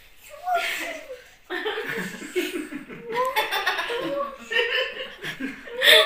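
People laughing in short, repeated bursts, with a louder burst near the end.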